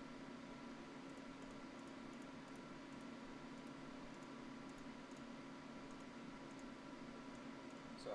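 Faint, irregular computer mouse clicks over a steady low hum and hiss of microphone room tone.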